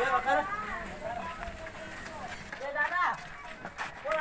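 Voices calling out at a distance in short, high-pitched phrases: once at the start and again about three seconds in. A few faint knocks come near the end.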